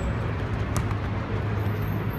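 Steady low rumble of traffic from the elevated highway overhead, with a single sharp knock under a second in.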